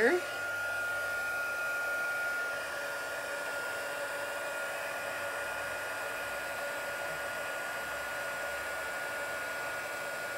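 Handheld craft heat tool (embossing heat gun) blowing steadily with a steady high whine, heating silver embossing powder on stamped paper to melt it.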